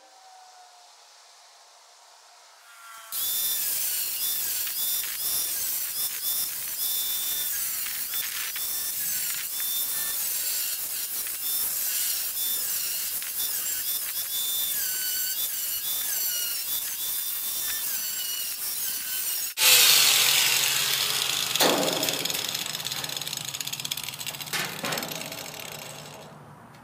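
Angle grinder with a cutting disc cutting through the thin sheet steel of a dryer cabinet, starting about three seconds in with a loud, high screeching grind. Late on the sound changes abruptly, with a brief loudest moment, and then dies away.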